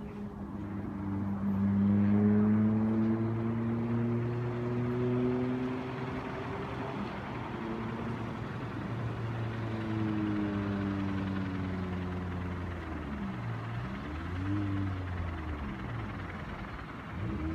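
A machine hum, an engine or motor, with a low pitch that slowly rises, then sinks and wavers, loudest about two seconds in.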